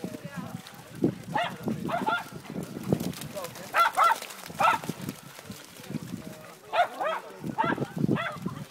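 Dogs barking and yelping in play: short, high barks in three bursts of several each, with lower scuffling between.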